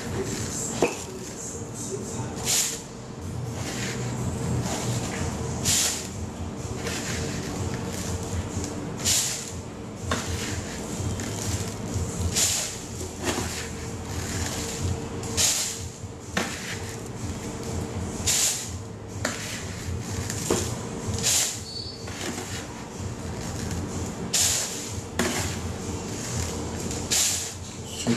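Milled chocolate malt being poured into a plastic bottle of water: a steady hiss of grain with a sharp tap or rustle about every three seconds, over a low steady hum.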